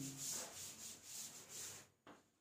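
Chalk writing being wiped off a blackboard: repeated rubbing strokes, about three a second, that stop just before the end.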